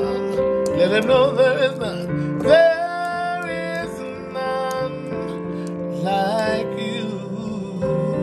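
A man singing a slow worship song with wavering vibrato over a sustained instrumental backing, with a high held note about two and a half seconds in.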